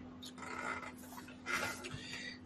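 Faint breathy exhalations close to a microphone, two soft puffs, over a steady low electrical hum.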